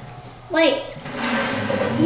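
Speech only: quiet for the first half-second, then a short, high-pitched voice with a falling pitch, then softer, lower talk.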